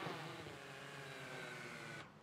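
Small folding quadcopter drone whining faintly as it touches down, its motors winding down with a slowly falling pitch.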